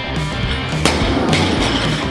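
Rock music with electric guitar, and about a second in a single loud crash as a loaded barbell with rubber bumper plates is dropped from overhead onto the floor.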